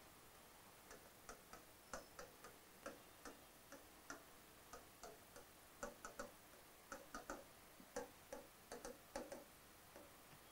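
Faint, irregular ticks and taps of a marker on a whiteboard while words are handwritten, several clicks a second in uneven clusters over near-silent room tone.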